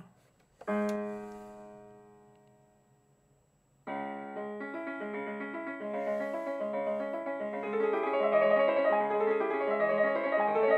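Built-in demo song of an 88-key educational synthesizer playing a fast piano piece with rapid runs of notes. It starts about four seconds in and grows louder. Before it, a single piano tone rings out and fades.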